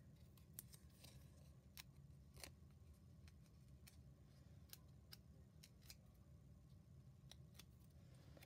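Near silence: a faint low room hum with scattered light clicks and taps from small paper pieces being handled on a craft desk.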